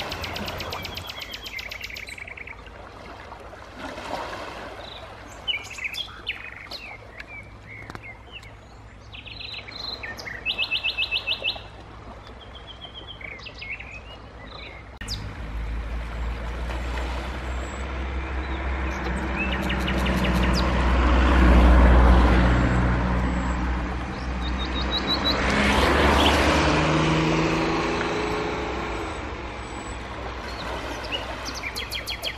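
Small birds chirping, with a quick high trill a little before the middle. From about halfway, a low engine rumble builds, swells, eases and swells again, and it is louder than the birds.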